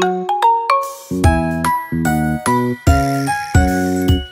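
Instrumental children's song music: bright struck notes ringing out over bass and chord notes in a steady beat, with no singing.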